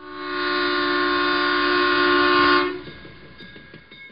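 A loud, sustained chord of several steady tones, like a horn or organ blast, swelling in over about half a second and holding level. It cuts back sharply under three seconds in, leaving a faint tail.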